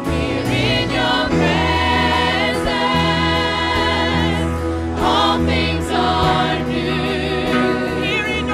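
Live gospel worship singing: a small group of singers on microphones holding long notes with vibrato, over steady instrumental backing with a low bass line.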